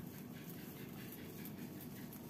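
Faint sounds from a group of kittens over a steady low background hum.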